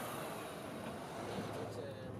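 Steady road-traffic noise of cars driving past, easing off slightly toward the end.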